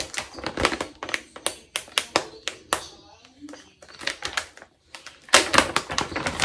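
Clear plastic zip-top bag crinkling and crackling as it is handled and pulled open, in quick irregular crackles, with a brief lull about four to five seconds in and a louder burst just after.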